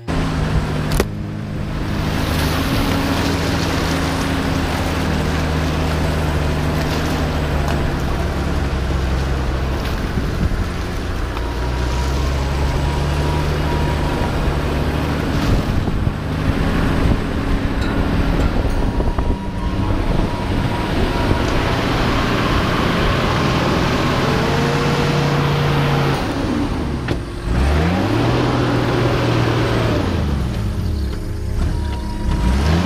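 Four-wheel-drive safari vehicle's engine running as it drives along a rough, muddy dirt track, with steady road and tyre noise. Near the end the engine note drops and climbs again.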